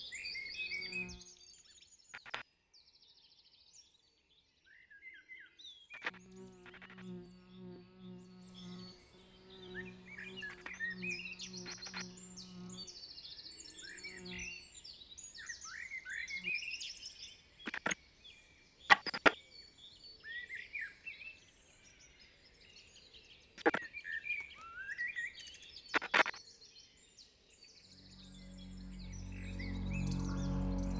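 Many small birds chirping and twittering over a soft, low sustained music tone, with a few sharp clicks in the second half. Music swells in near the end.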